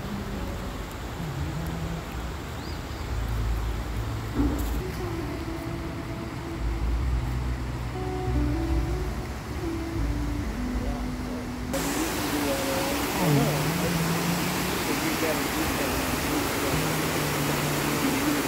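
River water rushing over rock rapids and a small waterfall, a steady rush that grows much louder and brighter about two-thirds of the way through. Music with held notes plays along with it.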